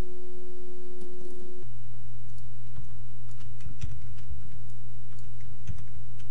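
Scattered light computer mouse and keyboard clicks over a steady hum; the hum's pitch drops abruptly about a second and a half in.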